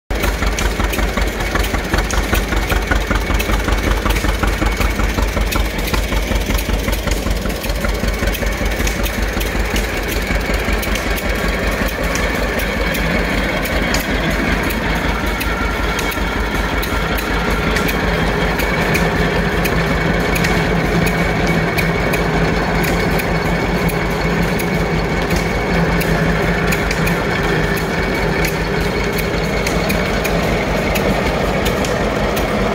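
Antique John Deere Wide Tread tractor's two-cylinder engine running steadily under belt load, with a regular beat of exhaust pulses, driving a flat-belt corn sheller. A steady low hum comes up about halfway through as the sheller runs.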